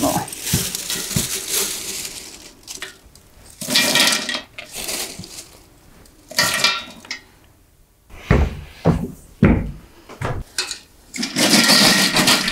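Dry alder cones rattling and clattering into a large stainless steel stockpot, poured in several separate bursts. A few dull thumps come about two-thirds of the way through.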